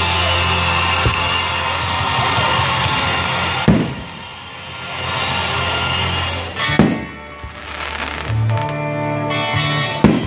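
Aerial firework shells bursting with sharp bangs, about a third of the way in, again about two-thirds in, and once more at the end, over steady music.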